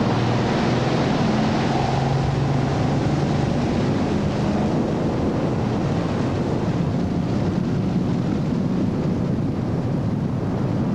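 Ski tow boat's inboard engine running steadily at towing speed, with wind noise on the microphone and rushing water.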